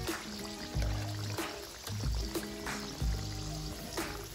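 Background music with a regular bass beat over the bubbling sizzle of sweet potato slices deep-frying in oil and melted brown sugar.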